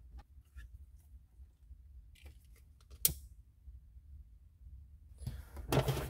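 Faint handling of wiring and plastic plug connectors: small scattered clicks and rustles, with one sharp click about three seconds in.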